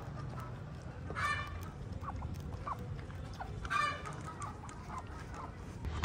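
Farmyard poultry calling: two short calls, about a second in and near the four-second mark, with a few faint short chirps in between over a steady low background rumble.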